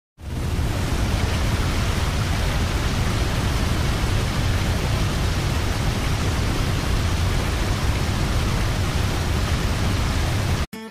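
A steady, loud rushing noise spread across all pitches and heaviest in the lows. It starts abruptly a moment in and holds even throughout.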